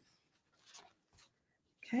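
Faint rustling of paper napkins being handled, a few soft brushes in otherwise near-quiet room tone.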